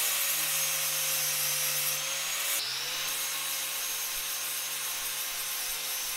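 Angle grinder with an abrasive disc running steadily against a metal nut clamped in a vise, grinding its surface clean. The motor whine holds steady, with a slight shift in pitch about two and a half seconds in.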